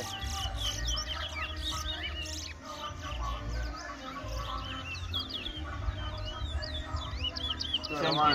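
Caged male towa-towa (chestnut-bellied seed finches) singing: repeated rapid phrases of quick, sliding whistled notes, one phrase after another with only short pauses.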